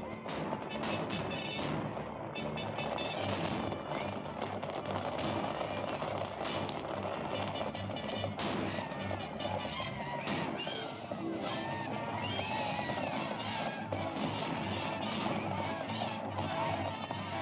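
Old film-soundtrack action music, cut off sharply in the treble, laid over a busy clatter of galloping horses' hoofbeats and sharp knocks.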